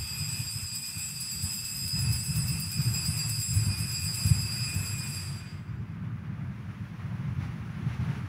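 Altar bells rung continuously to mark the elevation of the consecrated chalice, stopping about five and a half seconds in, over a steady low rumble.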